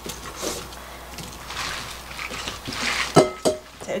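Soft background music with plucked guitar notes, with the light rustle of green onion stalks being handled and laid on a wooden cutting board.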